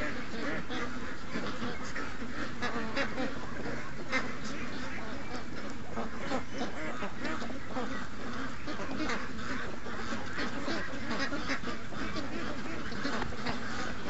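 Large flock of domestic ducks and geese quacking and honking continuously, many calls overlapping into a steady chorus.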